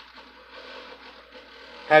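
A pause in a man's speech filled only by faint, steady background hiss. His voice comes back sharply near the end.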